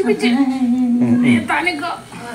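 A woman's voice humming one long held note, then a few shorter gliding vocal sounds near the end, as in playful baby talk.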